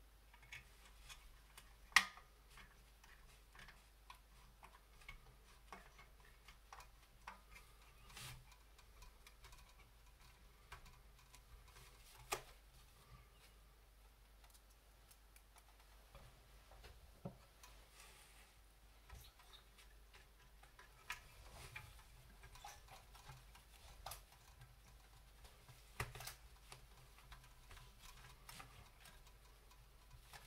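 Scattered light clicks and taps from the metal body panels of a 1/14 scale RC excavator kit being handled and fitted by hand, with one sharper click about two seconds in and another about twelve seconds in. Otherwise near silence.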